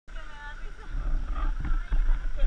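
Wind buffeting an action camera's microphone in uneven low rumbles, with people's voices in the background.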